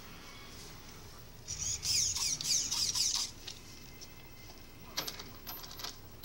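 Electric motor of a Traxxas Slash 4x4 RC truck whining as the throttle is blipped, the pitch sliding up and down for about two seconds from about one and a half seconds in. A few light clicks near the end.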